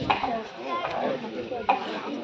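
Small glasses and containers being handled on a table, with a few sharp clinks about a second apart over crowd chatter.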